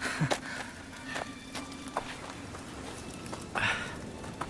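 Slow, uneven footsteps on hard ground, a few separate steps as a radio-drama sound effect, with a louder rustle near the end.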